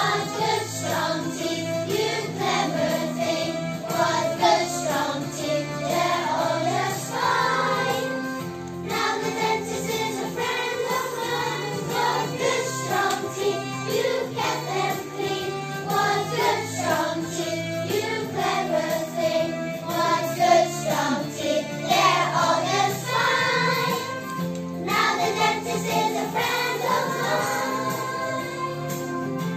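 A class of young children singing a song together over accompanying music.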